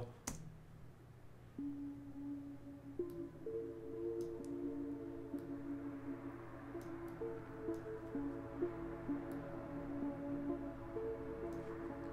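A soloed synth part of held, sustained notes playing through Ableton's Shifter pitch-shifting effect, its envelope follower set to start each note higher in pitch and drop it back within about 200 milliseconds. The notes begin about a second and a half in and play at a low level.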